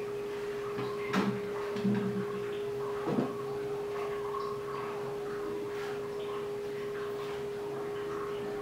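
A steady, even hum on one pitch, with a few light knocks in the first three seconds.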